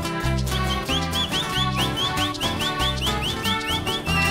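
Live huayño band music, with bass guitar and guitar playing a steady beat. From about half a second in, a high whistle chirps over it in short rising notes, about four a second.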